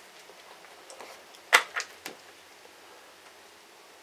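Blitz chess move with wooden pieces: a piece is set down on the board and the chess clock is pressed, giving three sharp clicks within about half a second, the first the loudest, about a second and a half in.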